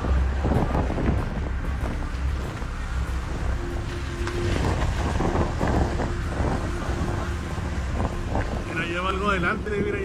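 Wind buffeting a phone's microphone outdoors, a steady low rumble, with indistinct voices over it and a brief wavering voice-like sound near the end.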